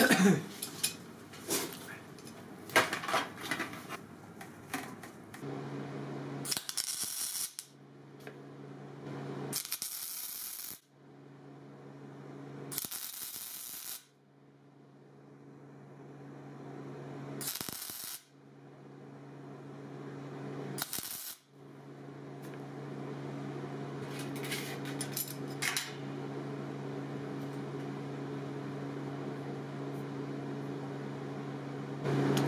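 Clicks and clatter of metal parts being clamped, then from about five seconds in a steady low hum as an oxy-propane torch heats the steel to braze a ring in. The hum is broken by several loud hissing bursts.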